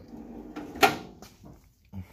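A drawer of a Mac Tools Edge 54-inch tool box sliding shut on its soft-close slides, with one sharp clack a little under a second in as it closes.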